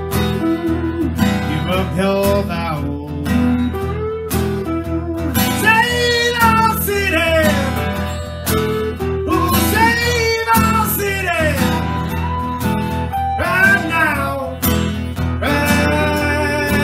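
Blues-rock band music: acoustic guitar strumming with an electric guitar. Over them, from about five seconds in, a lead line of bending notes plays until near the end.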